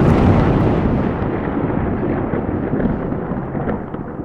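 Logo-sting sound effect: a loud, explosion-like rumble that grows steadily duller and slowly fades as its treble closes off.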